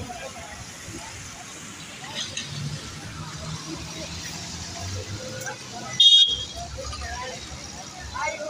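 Urban roadside traffic: vehicles running past with a low engine hum and scattered voices, and one short, loud, high-pitched horn toot about six seconds in.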